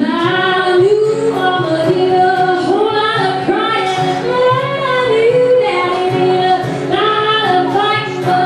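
A woman singing a slow song live, accompanying herself on acoustic guitar, with long held notes that bend in pitch.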